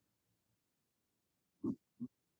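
Near silence, broken about a second and a half in by one very short human vocal sound, like a brief grunt, lasting about a tenth of a second.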